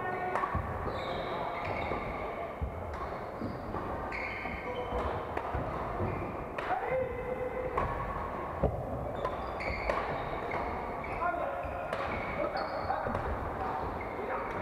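Badminton rackets hitting shuttlecocks across several courts at irregular intervals, mixed with short squeaks of court shoes on the wooden floor, all echoing in a large hall, with players' voices in the background.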